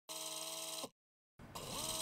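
Short broadcast transition audio between news segments: a brief held chord of several steady tones that cuts off abruptly, then after a short silence a rising swoosh-like sound as the weather segment's graphic comes in.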